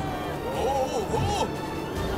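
Cartoon soundtrack: background music with short wordless vocal exclamations.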